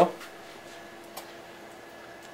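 Faint trickle of toilet cleaner poured from a plastic jug into a plastic soda bottle, over a low steady hum, with one small click about a second in.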